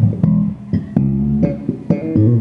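Ibanez SR1205 Premium five-string electric bass played fingerstyle: a short run of plucked notes, with one note held for about half a second midway.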